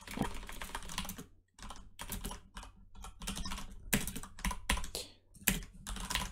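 Typing on a computer keyboard: quick runs of keystrokes with a couple of short pauses.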